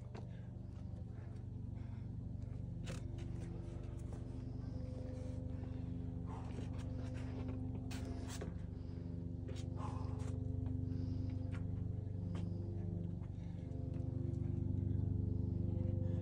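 A steady low hum made of several sustained tones, whose pitches shift every few seconds, with a few faint short taps over it.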